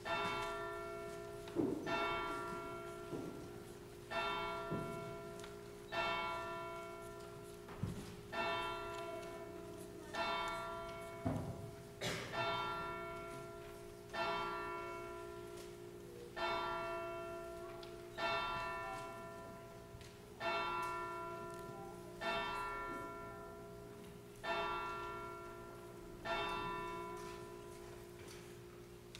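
Church bell tolling, a single strike about every two seconds, each stroke ringing on and fading before the next, with a few dull knocks in between.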